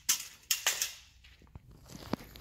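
Handling noise from tools and metal parts: two short scraping rustles in the first second, then a single sharp click about a second and a half in.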